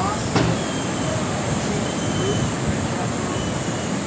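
Steady rush of breaking ocean surf, with faint distant voices of people in the water and a sharp click about half a second in.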